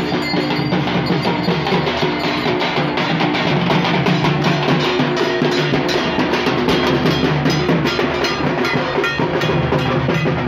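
Drums and percussion played in a fast, steady beat that accompanies a street procession.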